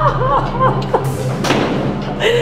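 A woman crying out in short wailing sobs that rise and fall in pitch, with a dull thump about a second and a half in, over a steady low hum.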